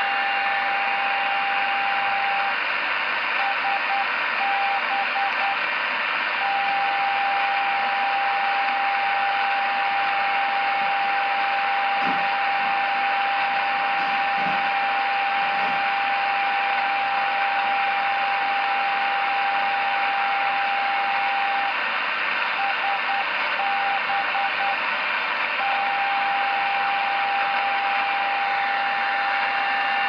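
Tecsun PL-660 receiver's speaker playing a longwave NDB beacon picked up through an active ferrite-loop antenna: a steady tone of about 800 Hz over loud hiss. Twice, a few seconds in and again about two-thirds of the way through, the tone breaks into the beacon's Morse code identifier.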